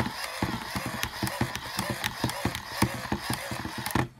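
Hand-crank dynamo of an Ideation GoPower solar flashlight being cranked fast: the gear train whirs with a rapid run of clicks, and the crank handle knocks against the flashlight's body as it turns. The cranking stops abruptly at the end.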